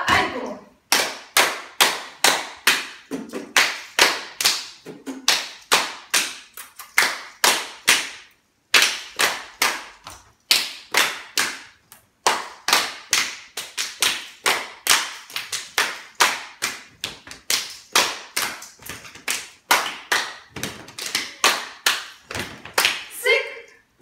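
Several people clapping their hands together in a steady rhythm, about three claps a second, with two short breaks partway through.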